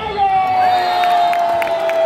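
Volleyball crowd cheering, with one voice holding a single long shout that slowly falls in pitch and stops just at the end, and hand claps through the second half.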